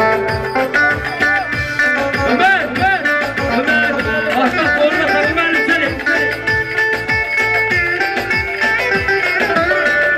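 Turkish folk dance music: a plucked-string melody over a steady drum beat.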